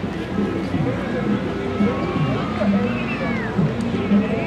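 Indistinct chatter of several overlapping voices, with a few high sliding calls near the end.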